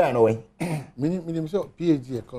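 A man speaking, with a short, rough, breathy sound a little over half a second in, like a throat clearing.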